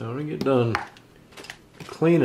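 A man speaking briefly, then a few light metallic clicks and taps as the shotgun's bolt assembly and action parts are handled.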